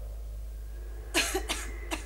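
A sick woman coughing three times in quick succession, starting about a second in.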